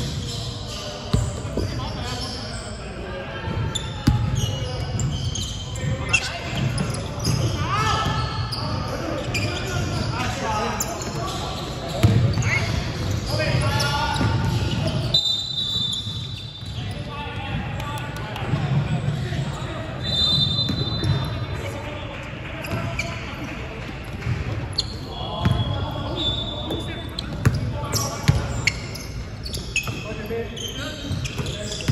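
Basketball game in a gym: a ball bouncing on the hardwood court, sneakers squeaking now and then, and players calling out to each other, all echoing in a large hall.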